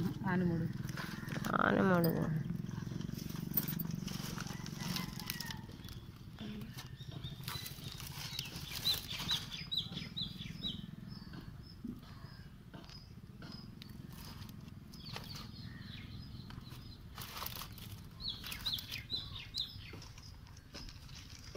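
Small packets and a plastic bag being handled, with scattered clicks and rustles. Clusters of short high-pitched notes come twice, in the middle and near the end, and a brief voice is heard about two seconds in.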